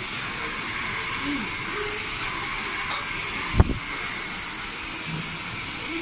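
Handheld hair dryer running at a steady rush of air while hair is blow-dried straight over a round brush. A single brief thump a little past halfway.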